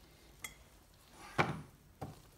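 Honda CB175 cylinder head being handled and turned over on a workbench: a light click about half a second in, then a louder metallic knock with a short ring about a second and a half in.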